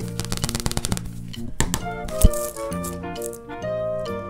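Background music throughout, with a fast rattle of loose coloured sand being shaken and tapped off a sand-painting sheet in the first second, more scattered ticks, and one sharp knock a little over two seconds in.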